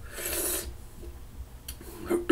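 A man's short hissing breath through the open mouth, about half a second long, in reaction to the burn of a hot chili pepper; then quiet, with a faint click near the end.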